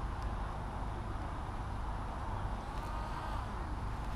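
Steady low outdoor rumble, with a faint, short whine from a small electric RC plane motor about three seconds in.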